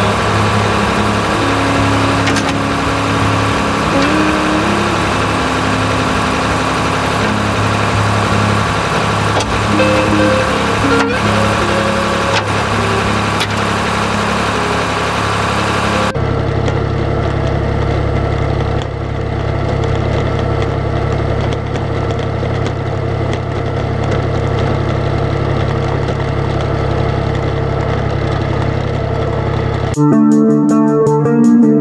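Tractor engine running steadily, with guitar background music over it. About halfway through the sound changes abruptly to a deeper, duller engine drone.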